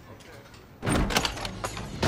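A sudden loud bang about a second in, as a door is pushed open and two people stumble against it and the wall, followed by a run of knocks and clothes rustling.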